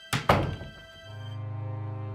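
Two heavy thuds close together, a man's body falling to the floor by a wooden door. About a second later a low, pulsing, ominous music drone begins.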